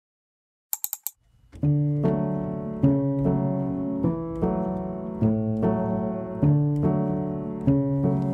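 Silence, then a few quick clicks just under a second in, followed by piano music that starts about a second and a half in, with chords struck every second or so.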